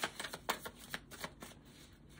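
Tarot cards being shuffled and handled by hand, a run of short, irregular card clicks.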